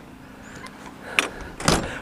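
Handling noise at an RV doorway: a single sharp click about a second in, then a few louder knocks near the end.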